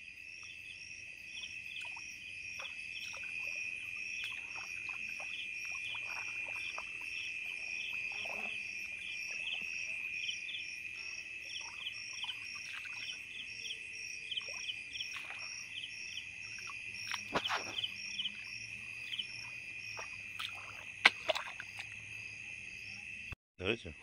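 Night chorus of insects: a steady high trill with rapid pulsed chirps repeating above it, with scattered frog calls mixed in. A few soft clicks of handling in the wet grass stand out, the sharpest about three seconds from the end.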